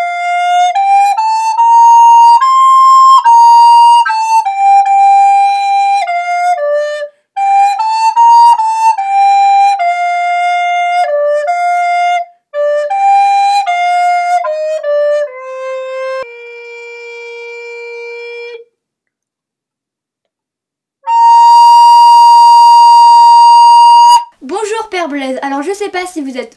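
A solo flute plays a simple melody one note at a time, ending on a softer held low note. After about two seconds of silence it plays one long, loud high note. People start talking in the last two seconds.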